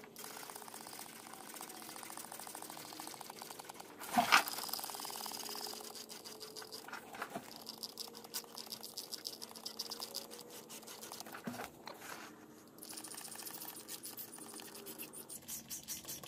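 Hand trigger sprayer squeezed over and over, misting pan and drain treatment onto an air handler's drain pan and lower evaporator coil: short squirts, a few a second. A single louder knock comes about four seconds in.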